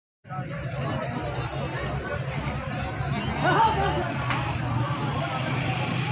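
Crowd chatter: many men talking at once in the open air over a steady low hum, one voice rising above the rest about three and a half seconds in.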